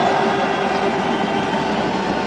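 Cricket ground crowd noise, a steady din of many voices.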